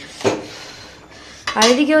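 A metal spatula clanks once against an aluminium kadai of curry, followed by a faint steady hiss from the pot on the gas stove.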